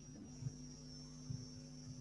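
Steady low electrical hum with a faint high-pitched whine above it, and a couple of soft clicks.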